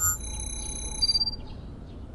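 A bright, shimmering chime effect: several high, steady ringing tones sound together for about a second, with a brief higher ping near its end, then die away to faint short chirps.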